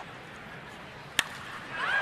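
A single sharp crack of a wooden baseball bat driving a pitched ball, a little past halfway, over the low murmur of a ballpark crowd; a play-by-play voice starts calling the hit near the end.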